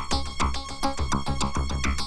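Electronic film background music: synthesizer with a steady beat, about two to three low beats a second under quick high ticks.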